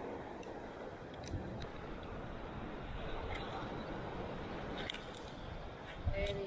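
Steady wash of surf and wind on the beach, with a few light clicks and taps as a fish is handled at the esky and laid on a plastic measuring ruler.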